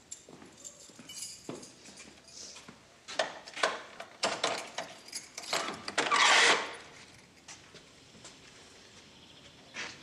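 Metal door bolt being worked by hand: a run of clicks and rattles about three seconds in, building to a longer scraping rattle as the bolt is drawn, then a single click near the end.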